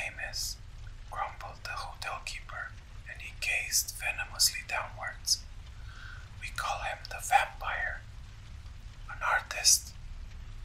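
Whispered narration: one voice whispering in a steady run of phrases, over a faint steady low background noise.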